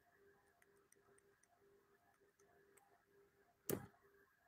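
Near silence with faint ticking, and one short burst of noise a little before the end.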